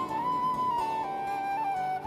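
Traditional Irish music: a flute-like wind instrument plays a slow melody of long held notes over quieter accompaniment, stepping down in pitch about halfway through.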